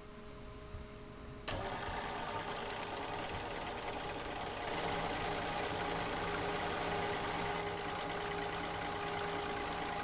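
A rebuilt 12-volt reverse-osmosis watermaker starting on its first run: a pump switches on suddenly about one and a half seconds in and runs with a steady hum. About halfway through the sound steps up as a lower hum joins, the electric motor coming on to drive the high-pressure pump.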